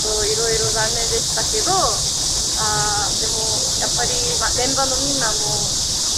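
A chorus of summer cicadas makes a loud, unbroken high-pitched hiss. Scattered voices talk underneath it.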